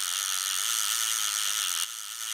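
Fishing reel whirring as its line pays out, a steady mechanical whirr that drops in level near the end.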